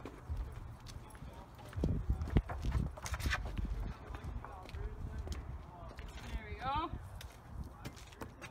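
Footsteps on parking-lot pavement with scattered knocks, over a steady low rumble of wind on the microphone. A short rising, voice-like sound comes about a second before the end.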